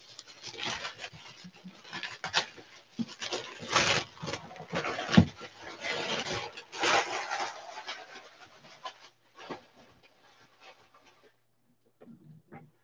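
Clear plastic shrink-wrap being torn and peeled off a cardboard box, crinkling and rustling in uneven bursts. It thins to a few faint crinkles after about nine seconds.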